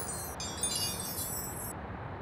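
A high, glittering chime sparkle sound effect made of many fine bell-like tones. It thickens about half a second in and cuts off abruptly near the end, over a faint steady outdoor background.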